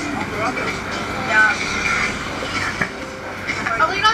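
Indistinct voices of people talking nearby, over a steady background hum.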